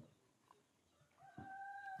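A rooster crowing faintly: after a near-silent pause, one call starts about two-thirds of the way in, rising in pitch and then held steady.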